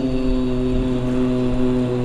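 Male voice reciting the Quran in a chanted tajweed style, holding one long vowel on a single steady pitch.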